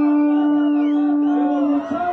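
A horn holding one long, loud, steady note over a cheering crowd; it stops shortly before the end.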